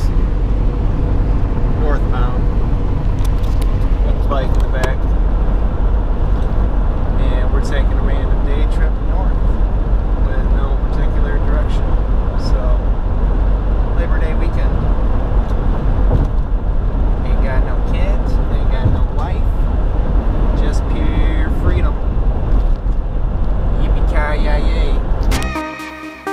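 Steady road and engine rumble inside a car cabin at highway speed, with a faint voice over it. The rumble drops away just before the end as music starts.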